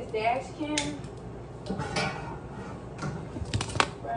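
Kitchen handling noise: scattered clicks and clatter of cookware and a food tray being handled, with a tight cluster of sharp clicks near the end. A voice is faintly heard in the first second.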